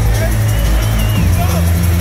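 Loud drum and bass music with heavy sub-bass played over a club sound system, with short shouts from the crowd over it.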